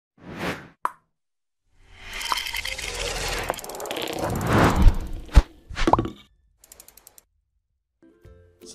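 Logo-intro sound effects: a short swish and a blip, then a long rising whoosh over a low rumble that ends in a sharp pop about five seconds in, a quick upward chirp, and a rapid run of soft ticks near the end.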